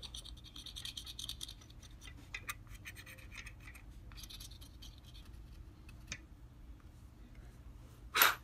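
Faint scratching of a stick of chalk rubbed back and forth over a vinyl stencil on wood, in several short runs of strokes with small ticks between them.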